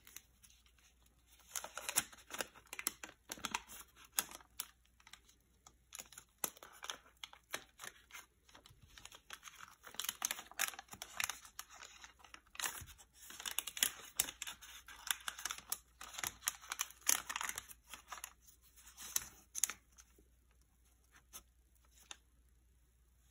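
Wax-paper wrapper of a 1972 O-Pee-Chee baseball card pack being peeled and torn open by hand: irregular bursts of crinkling and tearing crackles, starting a second or two in.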